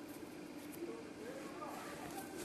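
Quiet room with a faint, low murmur of a voice.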